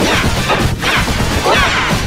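A cartoon channel's intro music and sound effects run through heavy audio distortion effects, giving a loud, harsh, noisy sound with sweeping pitch glides about a second apart.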